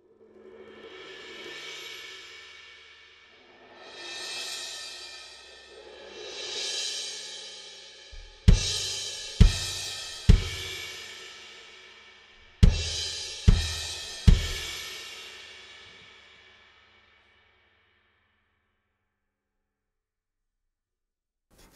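Sabian Anthology cymbals played with soft mallets: three mallet-roll cymbal swells, each building up and dying away. These are followed by two sets of three mallet crashes, each with a deep low thud, ringing out and fading away.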